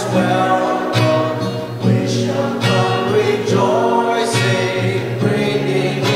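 A worship song sung to a strummed acoustic guitar, the voice held on long notes over steady strumming.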